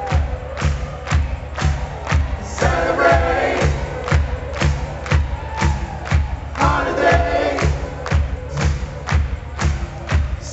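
Live band playing a dance-pop song with a steady kick-drum beat about twice a second, and a crowd singing along in short phrases every few seconds.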